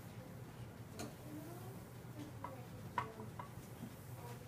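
Classroom room tone: several sharp, light clicks at irregular times, the loudest about three seconds in, over a faint murmur of voices.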